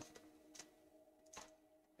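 Near silence: room tone with a faint steady hum and two faint clicks.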